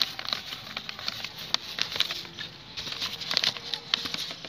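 Fingers rubbing and crumbling dried cineraria seed heads on a sheet of paper, giving irregular small dry crackles and rustles as the seeds are cleaned out of the chaff.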